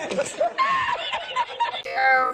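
A man laughing in repeated, high-pitched giggles: the 'Spanish laughing guy' meme laugh. It cuts off near the end as music starts.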